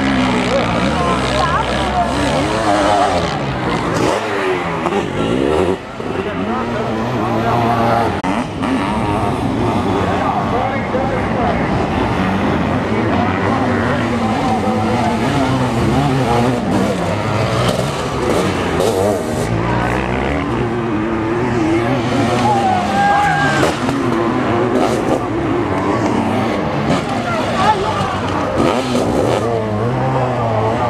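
Sidecar motocross outfits' engines revving hard as they race over a dirt track, several engines at once, their pitch rising and falling with the throttle.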